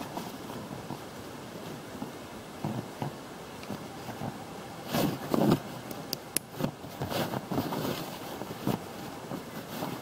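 Webbing straps and buckles on a dry bag being handled and adjusted on an inflatable packraft: rustling and scraping, with a louder burst of handling about five seconds in and a few sharp clicks just after, over steady wind noise on the microphone.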